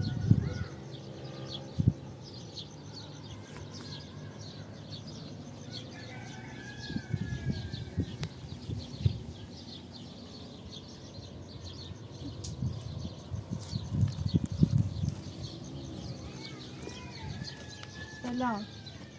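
Outdoor rural ambience of birds chirping over and over, with a few gliding calls and several low thumps scattered through.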